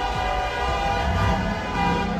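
Car horns held down and sounding together in a steady blare of several pitches, over the low noise of a street crowd and engines.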